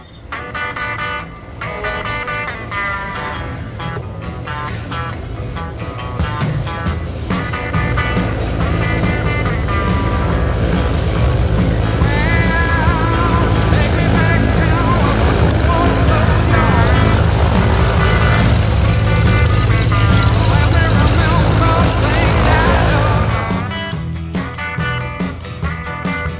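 Background music with a light aircraft's piston engine and propeller running beneath it. The engine grows louder from about seven seconds in, and the sound drops suddenly just before the end.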